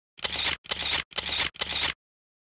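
Four camera-shutter sound effects in quick succession, evenly spaced about half a second apart, each a short click-and-whir burst.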